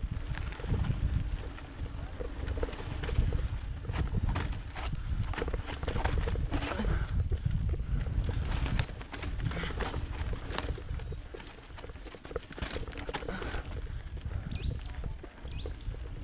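Mountain bike running fast down a dirt singletrack: a steady low rumble from the tyres and the air rushing past, broken by many sharp rattles and knocks as the bike goes over bumps.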